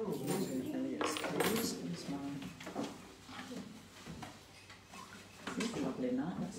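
Indistinct voices talking in a small room, with a few light clinks and knocks; it eases off in the middle before the voices pick up again near the end.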